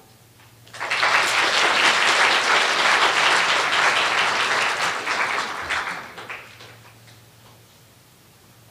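Audience applauding, starting about a second in, holding steady for a few seconds, then dying away near the end.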